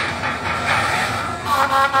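A horn starts sounding about one and a half seconds in and holds a steady, rich-toned blast.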